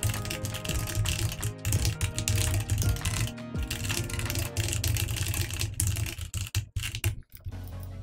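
Computer keyboard typing in quick runs of keystrokes over background music, breaking off in short pauses near the end.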